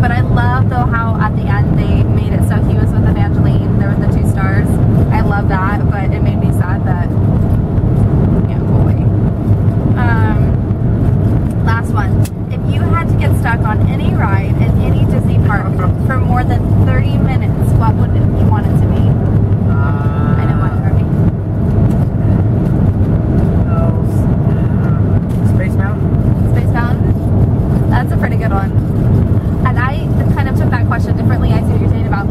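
Steady road and engine rumble inside a moving car's cabin, with voices talking over it.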